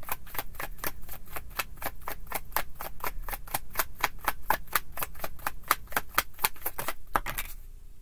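A deck of tarot cards being shuffled by hand, the cards snapping against each other in quick, even clicks about five a second, stopping about seven and a half seconds in.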